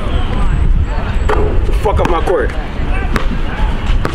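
A basketball bouncing on a hard outdoor court, a few sharp bounces, with voices and a steady low rumble of wind on the microphone.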